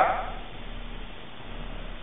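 A pause in a man's lecture: his voice trails off at the start, then only the recording's steady faint hiss and a low hum.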